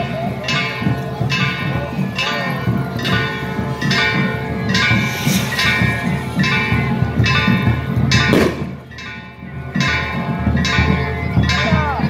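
Church bells rung rapidly and repeatedly, about one and a half strikes a second, each stroke ringing on into the next, over the noise of a large crowd. The ringing thins out briefly about eight and a half seconds in.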